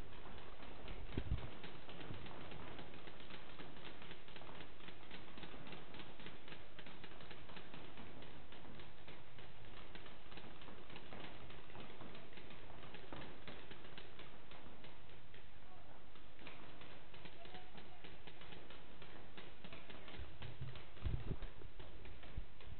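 Paintball markers firing during a game: a steady stream of faint, rapid clicks and pops.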